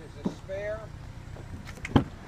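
2014 GMC Terrain's door shutting with a single sharp thump near the end, after a smaller knock about a quarter second in.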